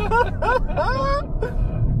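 Two men laughing and whooping, one voice gliding upward about half a second in. Under it runs a steady low rumble from the car inside its cabin.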